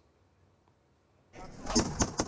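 Near silence, then a little over a second in, a noisy rush starts with rapid sharp cracks of small-arms rifle fire that come faster toward the end.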